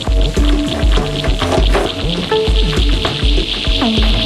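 Live acid techno from Roland TB-303 bass lines over a drum machine beat: a steady kick pulse with short gliding bass notes sliding in pitch, and a hissing band of high noise that grows louder through the second half.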